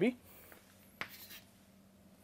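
Chalk on a chalkboard: a sharp tap about a second in as the chalk meets the board, then a short scrape while a letter is written.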